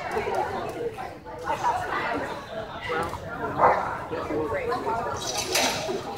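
Indistinct voices of a handler and spectators in a large hall, with a dog barking as it runs the agility course.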